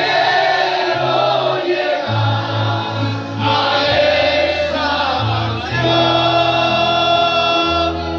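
A congregation and worship band singing a gospel hymn, many voices together over an amplified bass line whose sustained notes change every second or so.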